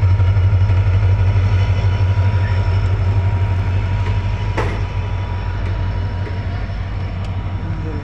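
WDP4D diesel-electric locomotive's engine running with a steady, heavy low rumble that slowly grows quieter, a faint steady whine above it and a single click about halfway through.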